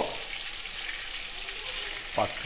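Mutton keema balls shallow-frying in hot oil in a stainless steel pan: a steady, even sizzle.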